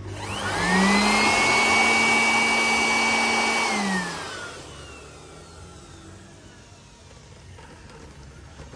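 Handheld air blower spinning up with a rising whine, running steady with a strong rush of air for about three seconds, then switched off, its whine falling as it winds down about four seconds in.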